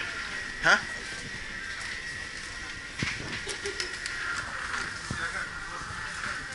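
Supermarket background: a low murmur of shoppers with scattered small clicks and a faint steady high whine, broken just under a second in by one short, questioning 'hah?'.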